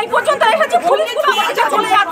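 Speech: a woman talking, with other voices chattering around her.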